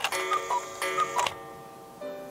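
Clock-ticking sound effect: a quick run of sharp ticks with bright ringing tones, including two pairs of alternating high-low chime notes, ending about a second and a half in.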